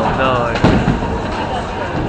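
A single sharp bowling-ball impact about two-thirds of a second in, with voices around it.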